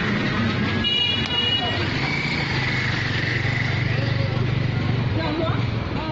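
Busy street-market noise with voices chattering and a motor vehicle engine running, its steady hum strongest in the middle seconds. A short high-pitched toot sounds about a second in.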